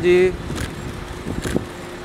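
Low steady rumble of a car engine running close by, with two or three short clicks in the middle. A man's brief call opens it.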